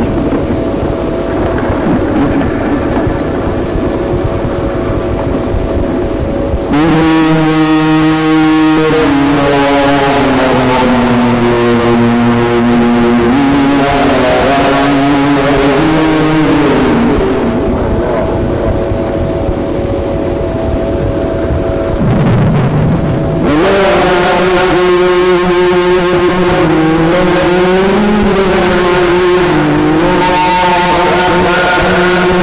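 Mujawwad Quran recitation: a solo male reciter sings two long, ornamented phrases, the first beginning about a quarter of the way in and the second in the last quarter. In the pauses between them there is a steady hum and noisy hiss.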